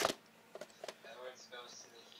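A sharp plastic click at the start, then a few faint clicks and rustles: a VHS cassette being handled and turned over.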